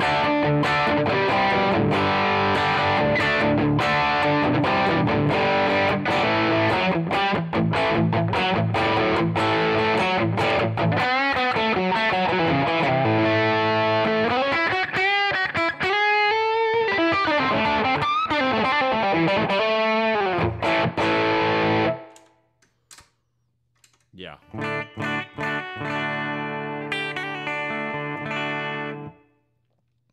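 Electric guitar played through a Headrush modeler's Fender Twin amp model with an overdrive pedal on. A long, busy passage with string bends is played, and it stops suddenly about two-thirds of the way in. After a short pause a shorter phrase follows and ends near the end.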